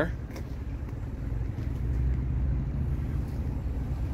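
Steady low rumble of a car engine idling, with no revving.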